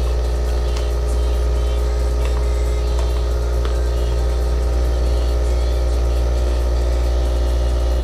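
Nescafé Barista coffee machine running: a loud, steady mechanical hum with a strong low drone. It cuts off suddenly near the end.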